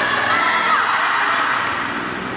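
Children shouting and cheering, many high voices at once, in a large indoor sports hall.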